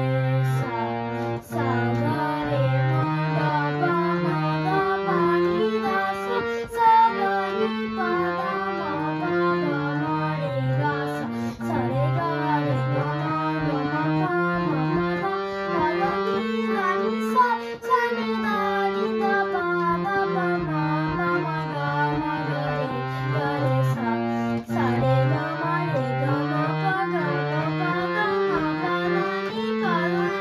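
Bina Flute hand-pumped harmonium playing a continuous melody of held reedy notes that step up and down, with a boy singing along.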